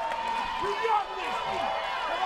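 Arena crowd cheering and calling out, with clapping, many voices overlapping.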